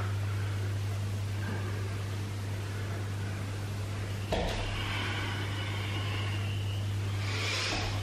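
A steady low electrical hum with faint hiss. About halfway through, a low rumble and a brighter hiss start suddenly and swell near the end.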